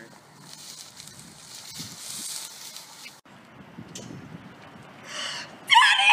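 A woman's loud, high-pitched cry near the end, after a few seconds of faint outdoor hiss.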